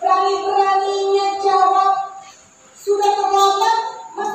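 A girl singing long, held notes, played back from a video on the room's projector system. One phrase ends about two seconds in and the next begins near the three-second mark.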